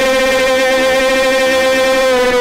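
Hindi gospel worship music held on one long, steady note, with the singers' voices sustained over keyboard accompaniment.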